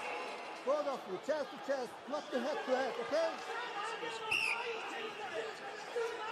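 Shouted calls from voices in a wrestling arena, and a short, shrill referee's whistle blast about four seconds in.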